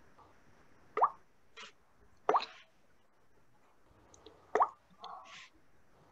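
Three short watery plops, each rising quickly in pitch, about a second in, a little after two seconds and near the end, with fainter hissy splashes between them. A listener takes them for an aquarium.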